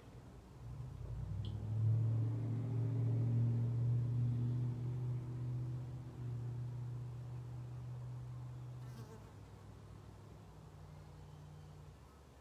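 A man's low, steady hum held on one long out-breath as qigong toning into the heart. It swells about a second in, is loudest in the first half, and fades out around nine seconds in.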